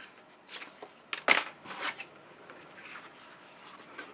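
Craft foam sheet and a taped metal cutting die being handled: a few short rustling and scraping sounds, the loudest a little over a second in.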